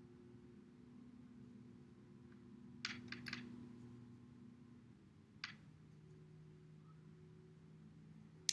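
Near silence with a steady low room hum and a few light clicks of a paintbrush against plastic: a quick run of three or four taps about three seconds in and one more tap about two seconds later.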